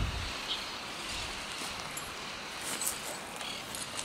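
Quiet rural outdoor background: a steady faint hiss with a few faint, short high-pitched chirps.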